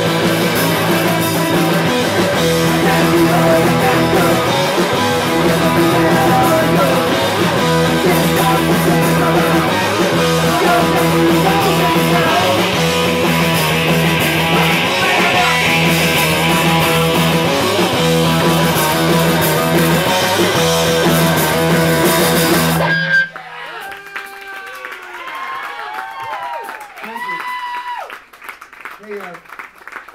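Live rock band (electric guitar, bass and drums) playing loudly through a small club PA. The song cuts off abruptly about three-quarters of the way through, and voices talking follow.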